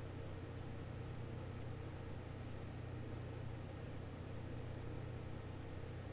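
A steady low hum under a faint even hiss, with no distinct events.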